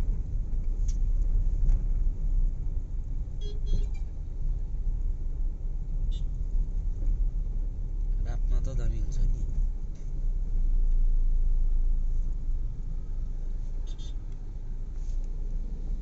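Road traffic heard from a moving vehicle in city traffic: a steady low rumble of engines and tyres, with a couple of brief high horn toots, one about four seconds in and one near the end.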